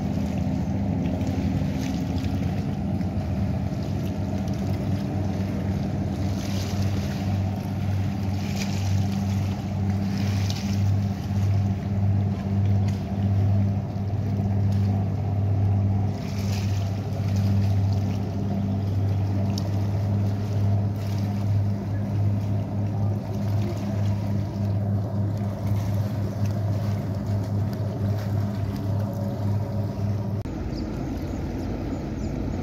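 Boat engine running at a steady speed, a deep, even drone with water and wind noise over it.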